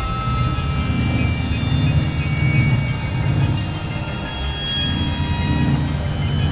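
Dense, noisy experimental electronic drone. A thick low rumble swells and eases, with many steady high tones held over it.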